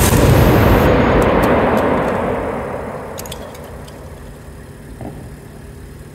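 Loud bang of a 210,000-volt Marx-bank pulse discharging as a plasma channel (artificial lightning) into a CRT television, followed by a rumbling echo that dies away over about three seconds. A few sharp crackles follow about one and a half and three seconds in.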